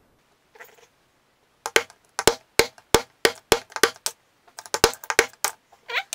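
Hammer blows on a steel punch, driving an old bushing out of an Ursus C-360 tractor's starter motor housing: a run of sharp metallic strikes, about three a second, each ringing briefly, with a short pause a little after the middle.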